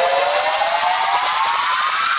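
Electronic dance music build-up: a synth riser sliding steadily upward in pitch over a wash of hiss, leading toward a drop.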